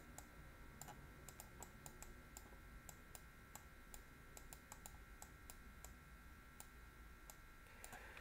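Faint, irregular clicks, several a second, of a stylus tapping on a pen tablet while writing, over near-silent room tone with a faint steady high whine.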